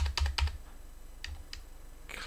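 Computer keyboard keys tapped: a quick run of keystrokes in the first half second, then two single taps later.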